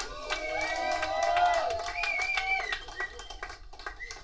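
Scattered applause and cheering from a small club audience just after a rock song ends, with voices calling out over the clapping.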